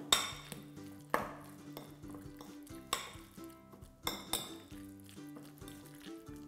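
Metal spoon stirring guacamole in a glass bowl, giving several sharp clinks against the glass with a brief ring after each, between softer scraping.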